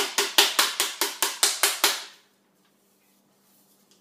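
A rapid series of sharp knocks, about five a second, as an upturned electric coffee grinder is tapped over a French press to shake the freshly ground coffee out; the knocking stops about two seconds in.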